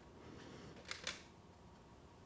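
Quiet room tone with two faint, short clicks in quick succession about a second in.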